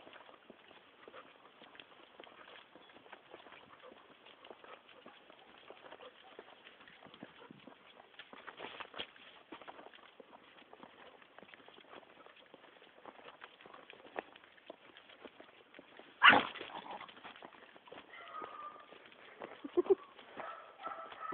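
Footsteps of a person and a dog walking on paving stones: a dense, irregular run of light clicks and scuffs. One sudden loud knock about three-quarters of the way through is the loudest sound.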